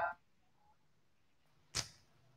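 Near silence on an online call line: the tail of a spoken "uh" trails off at the start, and a single short, sharp noise comes near the end.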